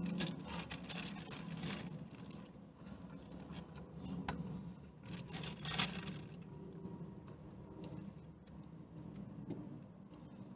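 A person chewing a mouthful of burger close to the microphone, with short bursts of rustling and handling noise in the first two seconds and again around five to six seconds in.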